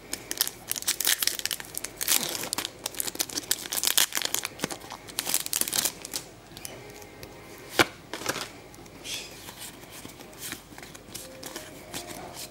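Foil trading-card booster pack wrapper crinkling and tearing as it is pulled open by hand, followed by softer rustling of the cards being handled, with one sharp click about eight seconds in.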